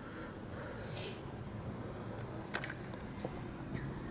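A few faint, scattered clicks and taps over a low steady background; the sharpest comes about two and a half seconds in.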